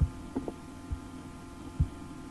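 A steady low hum with soft, dull low thumps roughly once a second, and two quick light ticks between the first two thumps.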